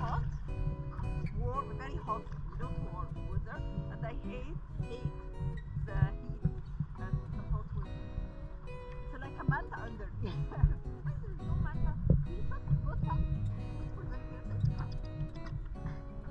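Background music: acoustic guitar with a singing voice, over a steady low rumble.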